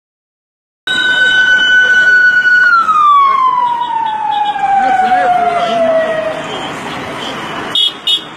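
Motorcade siren starting about a second in, holding one steady high tone, then winding down in a long, slow falling glide, with voices faintly underneath.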